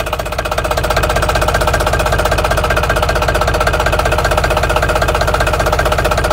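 Yanmar 4T90 four-cylinder diesel engine running steadily, close up, with a fast, even firing rhythm and the clatter of its injection.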